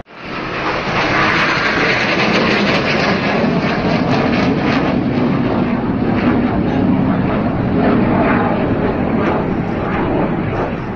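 Jet aircraft flying overhead in a display, their engines making a loud, steady noise.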